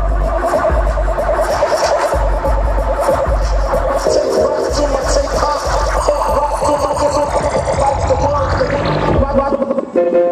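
Loud electronic dance music played live through a club PA, with heavy bass under a synth line. Near the end a synth sweep falls in pitch and the bass drops out for a moment before coming back.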